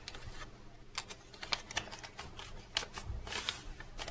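Faint, irregular small clicks and rustles of papers being handled at a table.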